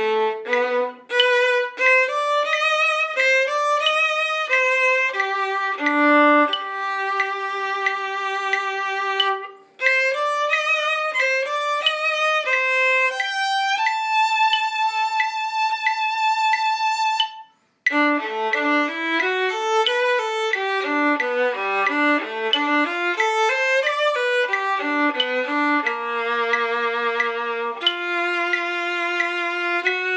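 A single bowed string instrument plays a melodic line one note at a time. There are two brief breaks along the way and one long held note about halfway through.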